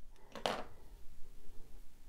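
Quiet handling of scissors and floss, with one short click about half a second in.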